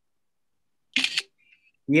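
Gated, dead-silent video-call audio, broken about a second in by one short sharp noise. Speech begins near the end.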